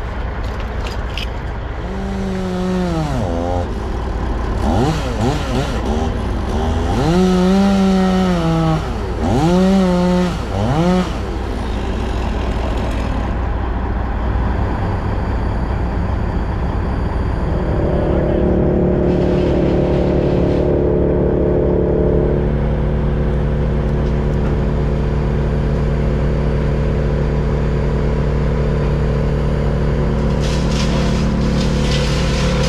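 An engine revved up and dropped back several times in quick rises and falls, then running at a steady speed as a constant drone from about two-thirds of the way in.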